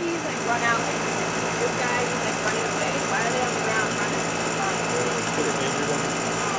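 A machine motor running at a steady pitch, with a constant low hum, under faint indistinct voices.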